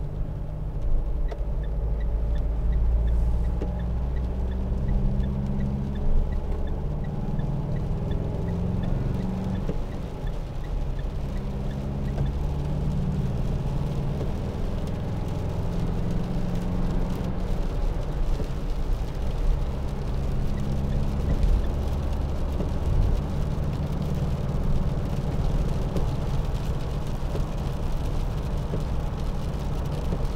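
In-cabin sound of a 2014 Mitsubishi L200's 2.5 DI-D four-cylinder turbodiesel driving along, its note stepping up and down as it changes speed, over tyre noise on a wet road and rain hitting the windscreen. A faint, regular ticking runs through the first several seconds.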